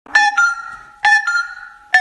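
A bell-like two-note chime, ding-dong, sounding twice about a second apart, each note ringing on and fading, with a third strike starting as it ends.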